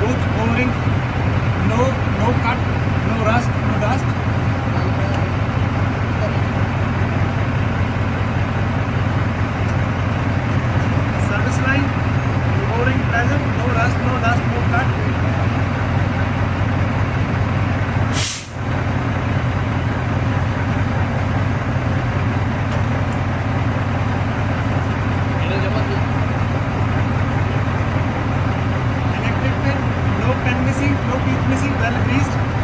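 Semi tractor's diesel engine idling steadily. About two-thirds of the way in there is a sharp click and the sound dips briefly.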